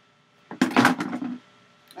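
Close handling noise: a single clattering rustle lasting under a second as a pair of long-handled loppers is picked up right beside the microphone.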